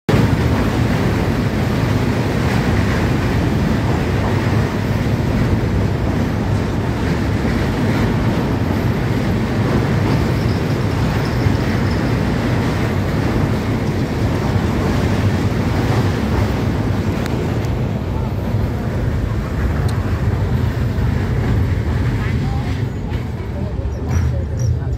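Train running over a steel truss bridge, heard through an open carriage window: a loud, steady rumble of wheels on the rails and bridge with wind on the microphone. The higher part of the noise falls away near the end as the train reaches the end of the bridge.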